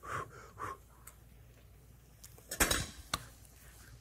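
A spoon clinking against a stainless steel pan of sauce: a quick cluster of clinks about two and a half seconds in and a single click half a second later, as sauce is scooped up to taste.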